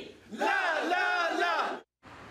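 A group of men shouting a chant together, which cuts off suddenly near the end.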